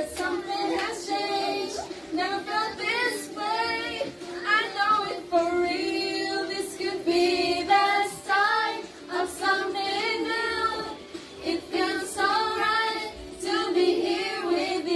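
Women singing karaoke into handheld microphones over a backing track, one continuous sung line after another.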